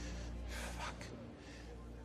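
A person's short breathy gasp, with a curse muttered under the breath.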